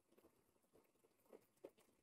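Near silence: faint room tone with a couple of soft ticks near the end.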